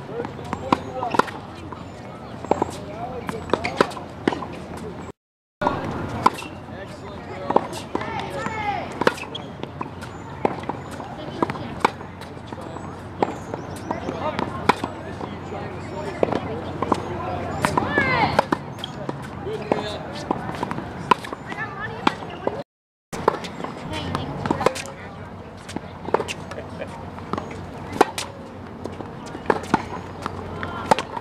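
Tennis balls struck by rackets and bouncing on a hard court: sharp pops at irregular intervals, with background voices. The sound cuts out completely for a moment twice.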